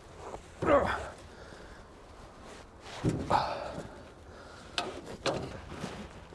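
A man grunting with effort twice as he strains to loosen an over-tightened secondary fuel filter with a wrench, with a few light clicks of the tool near the end.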